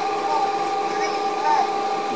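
A homemade generator rig, an electric motor spinning a 0.75 kW water-pump motor used as a generator with a 9 kg flywheel, running steadily with a constant whine of several fixed tones. It is under load, powering a bank of lit bulbs drawing about 300 W.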